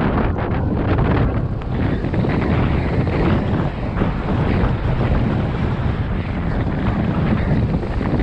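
Wind buffeting the microphone of a snowboarder's body-mounted action camera during a fast run through deep powder: a steady, uneven rushing noise, with the board's hiss through the snow beneath it.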